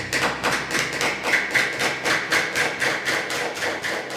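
Hands clapping in a steady rhythm, about five claps a second.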